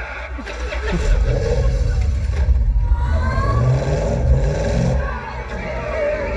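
Car-chase film soundtrack heard through cinema speakers: a small car's engine revving hard, its pitch rising and falling, over a heavy low rumble.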